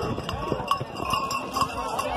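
Horses' hooves on dry dirt, a run of irregular knocks and clops as riders move around the gate.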